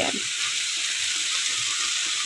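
Sliced mushrooms and onions sizzling steadily in melting butter in a frying pan, stirred with a silicone spatula.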